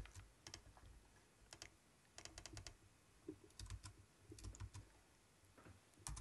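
Faint clicks of a computer keyboard and mouse, in short clusters of a few clicks each, against near silence.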